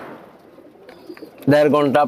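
Faint cooing of domestic pigeons, with a brief high chirp, under a man's voice that starts speaking about one and a half seconds in and is the loudest sound.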